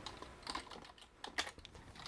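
A few faint, separate keystrokes on a computer keyboard as a short terminal command is typed.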